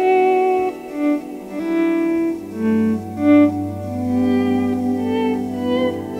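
Squier Starcaster electric guitar playing slow, sustained single notes through a Boss DD-20 Giga Delay, the echoes repeating and gradually fading beneath each new note. A low held note comes in about two seconds in and sounds under the higher notes.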